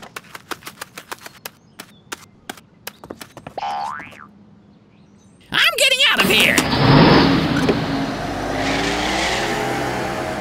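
Cartoon sound effects: a quick patter of light clicks and clatters as trash and cups tumble off a garbage heap, a short pitched sweep, then a wobbling boing about halfway through. After that a vehicle engine runs steadily and loudly through the rest.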